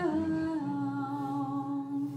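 A woman's voice holds one long sung note over the band's guitars, sliding down in pitch at the start and then held steady.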